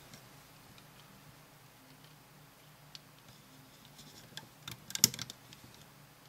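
Small clicks and taps of rubber loom bands being stretched over the pegs of a plastic Rainbow Loom, with a brief louder cluster of clicks about five seconds in.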